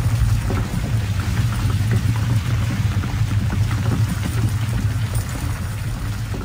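Rockslide sound effect: a loud, steady deep rumble with a dense clatter of falling stones as rocks seal a cave opening.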